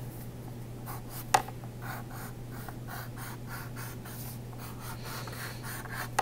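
Pencil scratching on paper in short, quick strokes as a spiky outline is drawn, with one sharper tick about a second and a half in.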